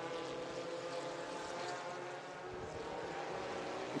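Engines of small open-wheel formula race cars running at speed on the circuit: a steady, even engine drone from several cars.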